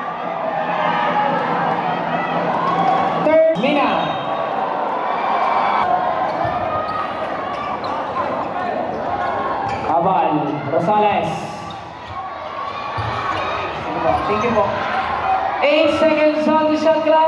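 Crowd of spectators in a large gymnasium shouting and chattering over each other during play, with a basketball being dribbled on the hardwood court. The voices echo in the hall.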